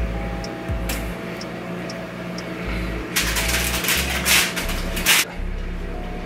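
Background music with a steady bass beat. From about three to five seconds in, aluminium foil crinkles loudly as the foil-lined baking sheet is handled.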